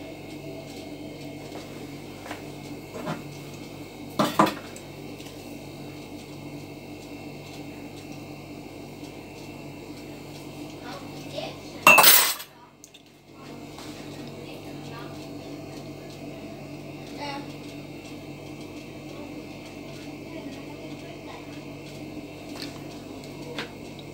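Light clinks and knocks of kitchen dishes and utensils over a steady low hum, a few in the first seconds, with one loud, sharp clatter about halfway through.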